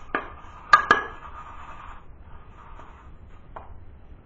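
Shaving brush and metal lather bowl being handled: a few sharp knocks and clinks, the loudest pair about three-quarters of a second and a second in and one more near the end, with a faint rustle between.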